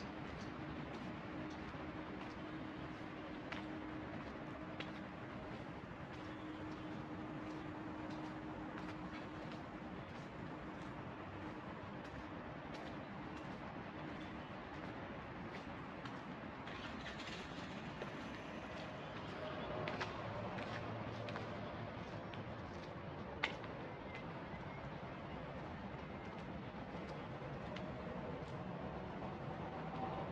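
Outdoor city background: a steady hum of distant traffic with a few faint clicks and one sharper click a little past the middle.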